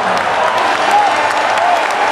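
Large arena crowd applauding steadily, with voices faintly audible over the clapping.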